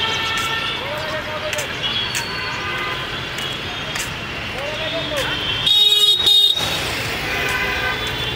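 Busy city traffic ambience with distant voices and horns, broken just past the middle by a loud vehicle horn blast lasting about a second.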